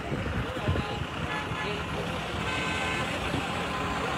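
Road traffic on a busy city avenue: a steady rumble of vehicles, with faint voices in the first second and a faint held tone starting about two and a half seconds in.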